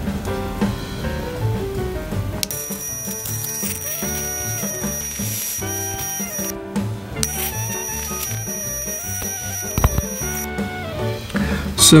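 High, steady electric whine of a Meiruby rechargeable arc lighter's arc, sounding twice (about four seconds, a short break, then about three seconds) as it is held to a candle wick, over background music.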